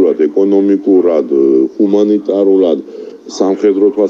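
A man talking: continuous speech.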